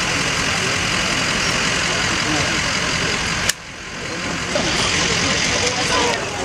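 Street noise with a vehicle engine idling steadily and faint voices in the background. A little over halfway through, a sharp click is followed by a brief drop in the sound.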